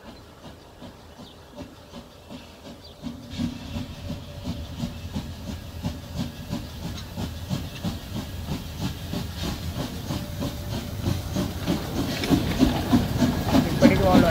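Narrow-gauge steam locomotive 99 2322-8 chuffing as it approaches and passes, with hiss of steam. A regular rhythm of exhaust beats starts about three seconds in and grows steadily louder.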